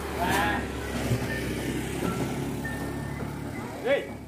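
A steady low engine hum runs under brief men's calls, which come just after the start and again near the end.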